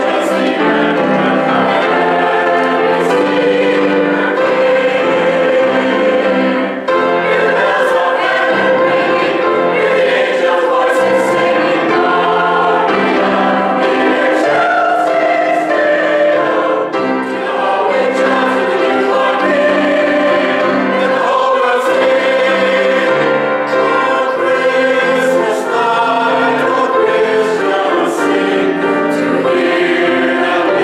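Mixed church choir of women and men singing together, with brief drops in loudness between phrases about seven and seventeen seconds in.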